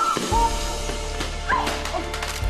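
Background drama score with a steady low bass coming in just after the start, with two or three short, yelp-like high calls over it, one at the start and one about a second and a half in.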